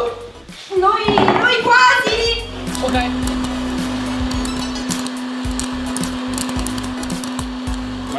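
Hot-air popcorn maker running, a steady hum with a hiss of blown air and scattered clicks, starting about two and a half seconds in after a few seconds of voices.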